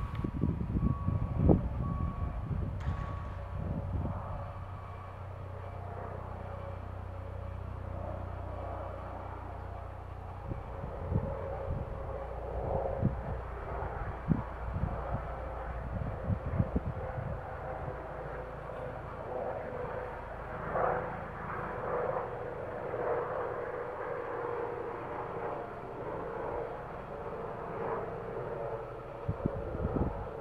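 A DB Class 442 Talent 2 electric multiple unit approaching from a distance: a steady electric hum that grows a little louder in the second half. A low rumble with a few knocks fills the first few seconds.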